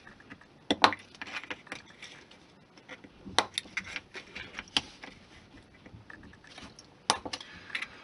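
Hobby knife trimming the overhanging ends of styrene strips off the corners of a small plastic model crate: faint scraping of the blade with a few sharp clicks as pieces snap off, spread a second or two apart.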